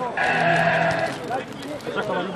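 A long held shout of about a second, a single drawn-out call cutting through the spectators' chatter at a football match, which carries on around it.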